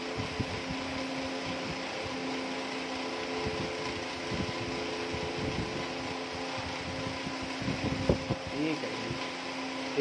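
Electric pedestal fan running with a steady whir and hum, while paper kites and their paper wrapping are handled, giving scattered soft bumps and rustles.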